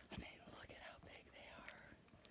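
A woman whispering faintly, words too soft for the recogniser to catch.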